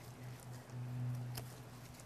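Hand pruning shears snipping a laurel stem: one sharp click about one and a half seconds in, with a couple of fainter clicks before it, over a steady low hum.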